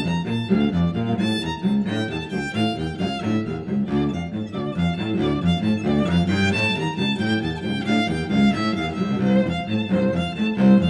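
Violin and cello playing together, a quick passage of many short bowed notes over a low cello line.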